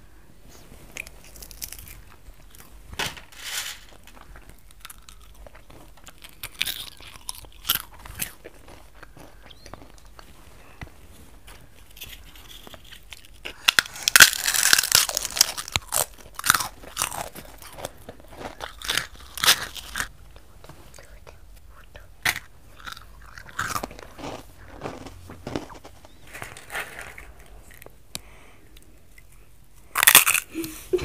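People biting and chewing crunchy dry snacks, sweetened puffed wheat among them, in irregular crunches. The loudest run of crunching comes about halfway through.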